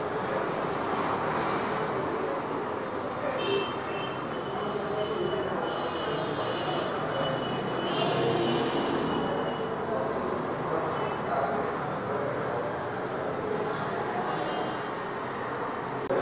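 Steady background noise with faint, indistinct voices in it.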